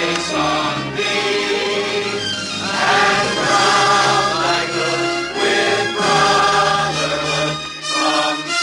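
A group of people singing together in chorus with long held notes, to upright piano accompaniment.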